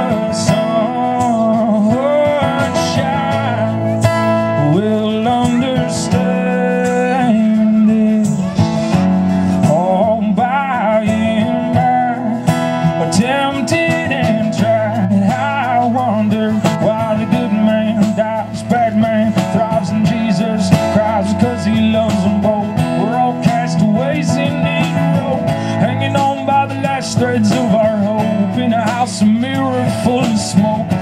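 Live acoustic band playing an instrumental passage: strummed acoustic guitar over a low cello line, with a violin carrying a melody that slides between notes.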